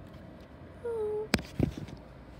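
A brief steady voiced sound about a second in, then a sharp click and a few soft low knocks: handling noise as the camera and the paper cut-outs are moved.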